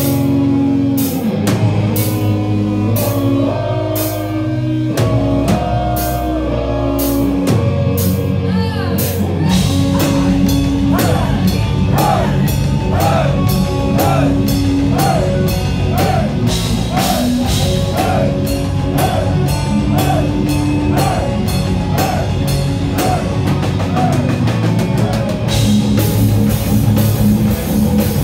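Heavy metal band playing live: electric guitars, bass and drum kit with a woman singing. The music starts with stop-start held chords, then breaks into a fast, steady drum beat about nine seconds in.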